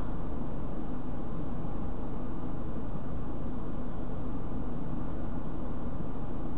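Steady low hum and rushing background noise that holds at one level throughout, with no distinct events.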